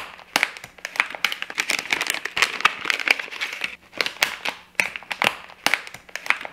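Plastic bait bag crinkling and crackling in irregular bursts as a pack of soft-plastic fishing worms is opened and a worm is pulled out.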